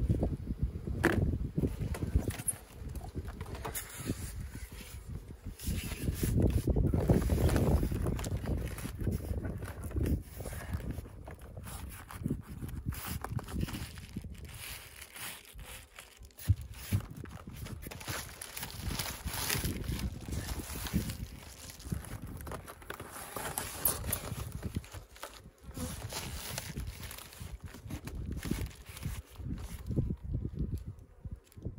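Wind buffeting the microphone in an uneven low rumble, with scattered knocks and rustles as wooden hive parts and a screened frame are handled and set in place on the hive. One sharp knock about halfway through.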